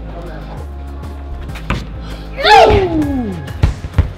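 Background instrumental music, then about two and a half seconds in a loud cry from a climber that falls in pitch over about a second as she comes off the wall, followed by dull thuds of her landing on the padded bouldering mat.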